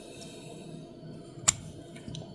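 A single sharp metallic click about one and a half seconds in, as the emptied brass euro-profile lock cylinder housing is turned in the hand, over a low steady hiss.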